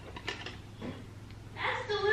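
Faint knocks and handling as an insulated tumbler is passed across and picked up, then a short sip through its straw near the end.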